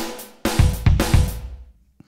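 Rock Drum Machine 2 iPad app playing a sampled rock drum kit pattern at 110 BPM: kick, snare and cymbal hits in a steady groove that stops and rings out near the end.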